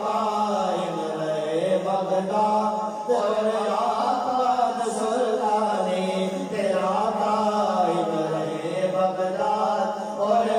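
Men's voices chanting an Urdu devotional salam (naat) through microphones. A lead melody rises and falls in long, drawn-out phrases over a steady low drone held beneath it.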